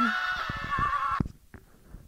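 A high, wavering pitched call lasting just over a second, ending in a quick warble before cutting off, followed by a few faint clicks.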